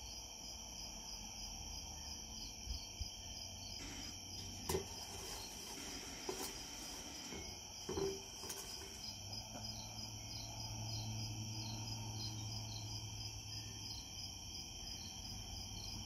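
A steady, high-pitched chorus of crickets chirping, with a pulse of about two chirps a second. A couple of short soft knocks come about five and eight seconds in.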